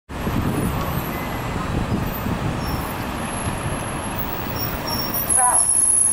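NABI 40-SFW diesel transit bus driving up the street through traffic, its engine and tyres rumbling steadily. The rumble gets louder about five seconds in as the bus draws up close, with a few short higher-pitched sounds on top.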